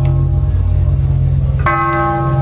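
A tolling bell rings out over a sustained low drone from the amplified band. The bell is struck again near the end, its tone decaying slowly.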